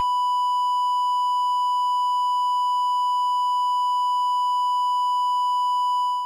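A single continuous electronic beep: one steady, high-pitched pure tone, held unbroken and unchanging.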